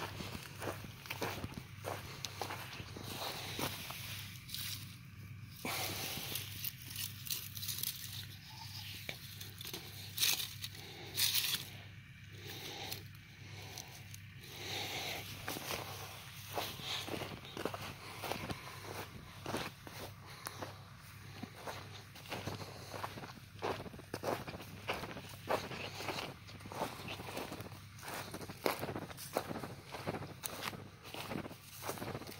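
Footsteps walking over dry grass and soil at a steady pace, with a steady low hum underneath.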